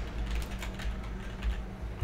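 Typing on a computer keyboard: a quick, irregular run of keystroke clicks.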